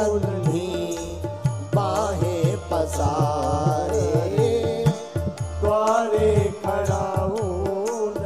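A man's voice singing a Hindu devotional chant into a microphone, holding long, wavering notes, over repeated drum strokes whose deep notes slide down in pitch.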